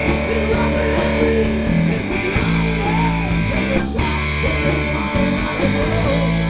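Live rock band playing loudly: electric guitars, bass guitar and drum kit.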